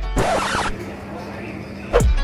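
Background music with a beat breaks off and a short rasping noise burst follows about a quarter second in, then a quieter stretch with a faint steady hum before the music comes back at the end.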